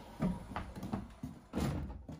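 A glass balcony door pushed open by its handle, then a small child's footsteps on a wooden deck: a handful of separate knocks and thumps.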